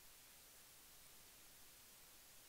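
Near silence: faint studio room tone.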